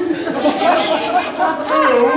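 Voices talking over one another in a large hall, the words not made out.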